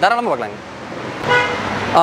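A brief car horn toot: a single steady tone lasting about a third of a second, a little past a second in.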